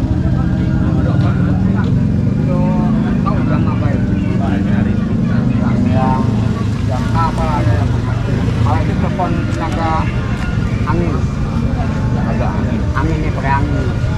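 Busy street-market ambience: a steady low rumble of motor traffic under indistinct chatter of people talking.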